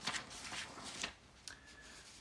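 Paper rustling as pages are handled and turned, a few soft rustles in the first second or so.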